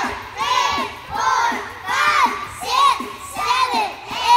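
A group of preschool children singing together loudly, close to shouting, in short repeated bursts that come in a rhythm.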